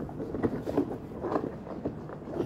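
Irregular handling noise from the rubber facepiece of a Soviet PBF gas mask being squeezed and worked by hand while a filter is pushed into its cheek pocket. The rubber rubs and rustles, with small scattered ticks and knocks.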